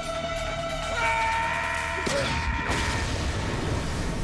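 Background score of held sustained tones. A rush of noise and a low rumble swell up about two seconds in, then fade.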